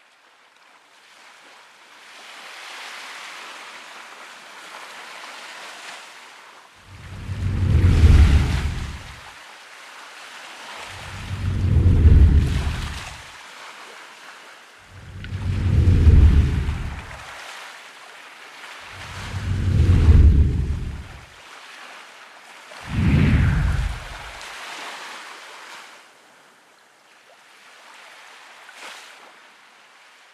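Ocean surf: a steady wash of water with five deep surges of breaking waves, each a couple of seconds long and about four seconds apart, before it fades out near the end.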